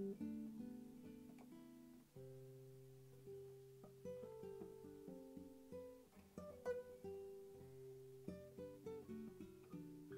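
Dan Kellaway cutaway nylon-string classical guitar with a spruce top, played softly fingerstyle: single plucked melody notes ringing and decaying over a low bass note struck about two seconds in and left to sustain.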